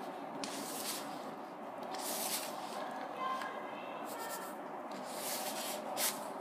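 Hands mixing flour, olive oil and water into a still-crumbly dough in a plastic bowl, with rubbing, squishing and scraping sounds in repeated bursts about every one to two seconds.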